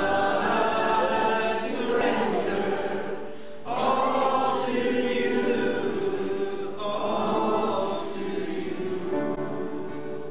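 Worship band and congregation singing a slow worship song together, voices holding long notes over guitars and keyboard. The singing dips briefly about three and a half seconds in between phrases.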